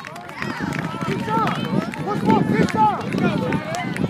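Several voices calling out and talking over one another at once, none of them clearly close to the microphone, over a general hubbub of outdoor activity.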